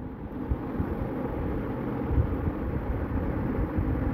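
Steady background rumble and hiss, heaviest in the low end, with no distinct events.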